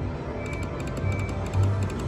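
Electronic slot machine game sounds during a reel spin: a couple of short high beeps over a steady low hum of casino floor noise.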